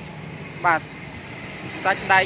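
A single short spoken word about two-thirds of a second in, over a steady low background hum.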